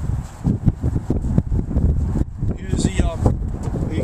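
Wind buffeting the camera microphone in an uneven low rumble, with a few words of speech about three seconds in.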